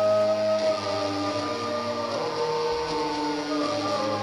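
Live band music in a slow passage without drums: several held, overlapping tones that slide from one note to the next, like synth or keyboard notes, with a low steady note underneath.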